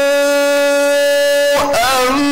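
A man reciting the Quran in the melodic tilawah style, holding one long steady note for about a second and a half. After a brief break he starts a new phrase with wavering, ornamented pitch.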